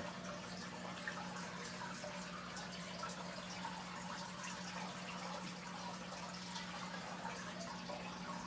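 Aquarium filter running: a steady low hum with faint trickling, dripping water.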